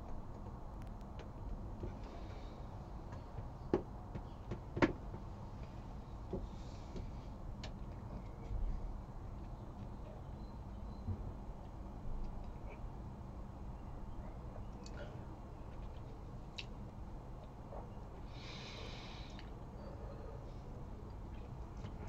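A man breathing quietly while tasting a sip of whisky, over low room tone. A few faint clicks come in the first five seconds, and one soft breath out through the nose comes about 18 seconds in.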